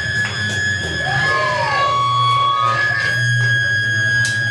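Electric guitar feedback ringing at a few steady high pitches over amplifier hum, with a couple of swooping glides in pitch about a second in.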